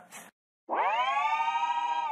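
Synthesized transition sound effect: a held electronic tone, rich in overtones, that swells up in pitch as it starts and sinks away as it fades, lasting about a second and a half.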